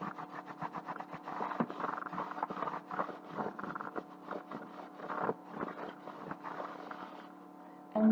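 Cloth rag rubbing in quick, repeated strokes over a carved painted frame, wiping dark wax off the raised details; the rubbing stops about seven seconds in. A steady low hum runs underneath.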